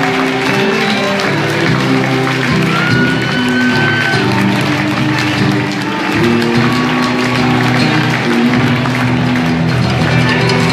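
Live band playing an instrumental passage between sung lines, led by guitars, heard through the venue's sound system. There are sustained notes and a few held, sliding high tones.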